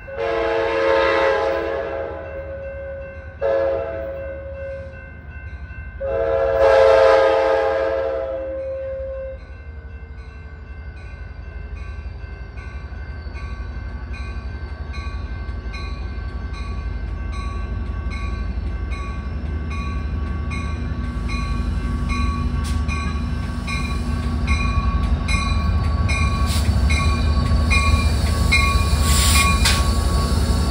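Diesel commuter locomotive's horn sounding a long blast, a short one and another long one as the train approaches, over a grade-crossing warning bell ringing steadily. The train's rumble then grows as it pulls into the station, with a high squeal, typical of brakes, near the end.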